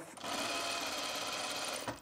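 Industrial sewing machine running a steady stitch along a tuck for about a second and a half, stopping just before the end.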